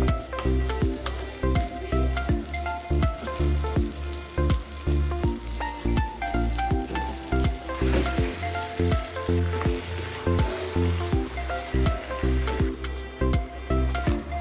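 Chopped onion, tomato and green chilli sizzling as they fry in oil in a pan, with the sizzle growing denser about halfway through as marinated chicken pieces go in and are stirred. Background music with a steady beat plays over it and is the loudest sound.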